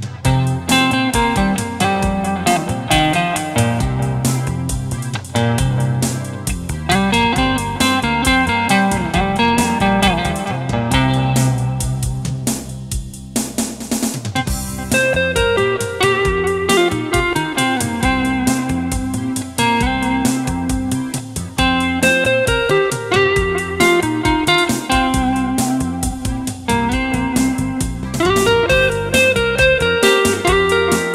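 Stratocaster-style electric guitar playing a continuous melodic piece, with a short break in the sound about thirteen seconds in.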